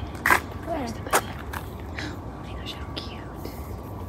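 Soft whispering and hushed voices, with a few brief sharp clicks in the first two seconds over a steady low background.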